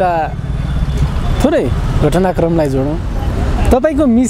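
A person talking in short phrases over a steady low rumble of road traffic.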